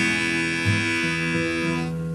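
Acoustic guitar and harmonica playing a folk-blues instrumental. A held harmonica chord cuts off near the end while the guitar notes ring on.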